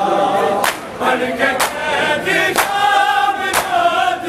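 Male voices chanting a noha in chorus, with a crowd's bare-handed chest-beating (matam) landing in unison about once a second, four sharp slaps.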